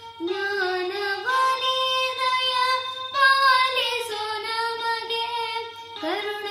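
A young boy singing a devotional song to Ganapati, with long held notes that step up and down, while accompanying himself on a small toy electronic keyboard.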